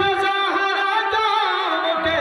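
A man chanting a noha (Shia mourning lament) through a microphone and loudspeaker, holding long notes that slide down in pitch near the end.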